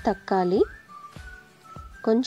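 Background music: a short melody of gliding pitched notes that repeats about every two seconds.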